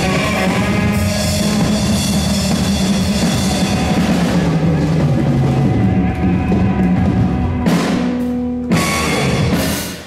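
Live blues-rock trio, with electric guitar, bass guitar and drum kit, playing the closing bars of a Texas blues song. Near the end the band stops on final hits, the last one ringing briefly before it dies away.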